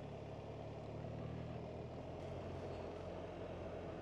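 BMW R1300GS boxer-twin engine running steadily at low road speed, heard faintly as a low, even hum.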